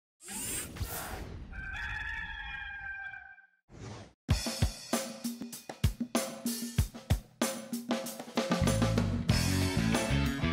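A rooster crows once, followed by intro music: sharp drum and cymbal hits from about four seconds in, with a bass line coming in near the end.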